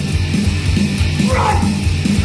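Heavy rock music with distorted electric guitars over a driving, steady beat, with a brief sliding high note about one and a half seconds in.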